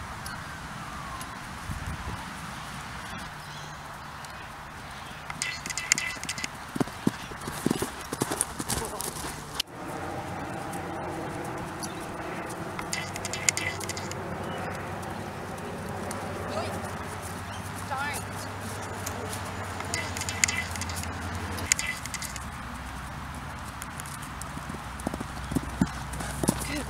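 A Welsh cross pony's hooves cantering on grass. The hoof beats come in several short runs of quick thuds.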